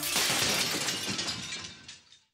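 A crash sound closing the theme music: a sudden hit that rings out as a noisy wash and fades away over about two seconds, its highest part dying first.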